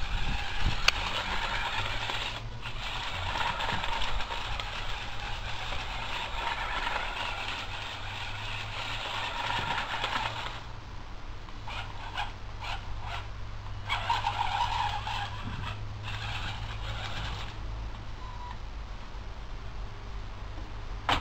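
Small electric walking robot (Theo Jansen–style linkage walker, driven by DC motors through an H-bridge) running: a whirring, clattering mechanical noise for about ten seconds that cuts off abruptly, then several short bursts as the motors are switched on and off. The builder reports that the leg mechanism on one side jars.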